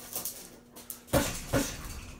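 Gloved punches landing on a Ringside heavy bag: two hard hits a little over a second in, less than half a second apart, after lighter ones near the start.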